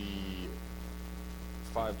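Steady low electrical mains hum on the recording, under a drawn-out spoken word at the start and speech near the end.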